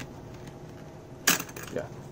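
A single sharp metallic click about a second and a half in, as a wire spring clip snaps free from the channel of a metal picture frame.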